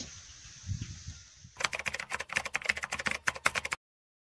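A faint low rumble, then a rapid, irregular run of sharp clicks from about one and a half seconds in. The clicks stop abruptly near the end.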